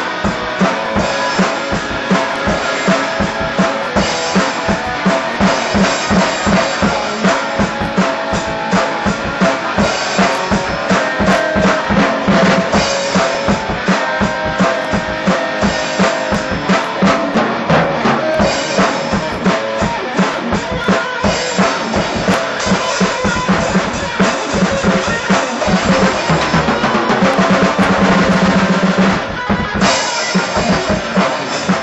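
Rock band rehearsing: a drum kit keeping a fast, steady beat with bass drum, snare and cymbals under an electric guitar. Near the end the beat gives way to a few seconds of held sound before it picks up again.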